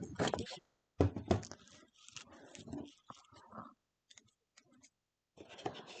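Cardstock being handled and rustled, then a few quiet snips of small scissors cutting cardstock, with some faint mumbled speech.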